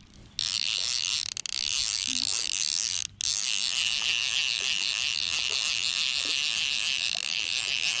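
Fly reel's click-and-pawl ratchet buzzing steadily as line is cranked in fast onto the spool, with a brief break about three seconds in.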